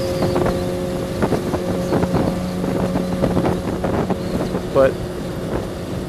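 Kawasaki ZX-6R (636) inline-four engine running at a steady cruising speed, its note holding one pitch, with wind noise on the microphone.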